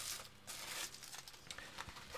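Crinkling rustle of a soft plastic pencil case being opened and handled, in two short bursts in the first second, then fainter scuffs and a few light clicks.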